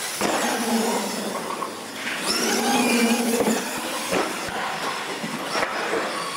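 Electric RC monster trucks racing over a concrete floor: the motors whine, rising and falling, over tyre noise, with a few sharp knocks in the second half as the trucks come down off the ramps.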